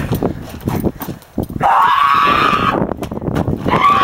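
A person's drawn-out cry or yell, held for about a second in the middle, with a shorter cry near the end. Scuffling knocks come before it.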